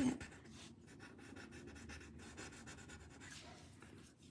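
Soft, quick scratching strokes of a white pencil shading on a paper tile.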